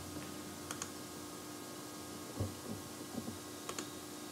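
A few sharp clicks of a computer mouse and keyboard, with some softer low knocks in the middle, over a steady low electrical hum.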